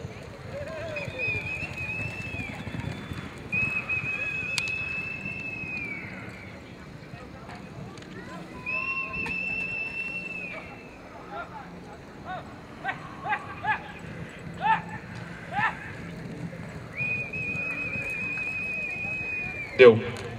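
Four long, steady high whistles, each held for one to two seconds and dropping in pitch as it ends, with a few short rising calls in the middle, over the low background rumble of an arena with horses working on dirt.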